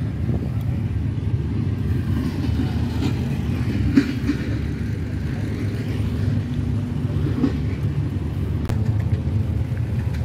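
Steady low rumble of engines running in the background, with one sharp click about four seconds in.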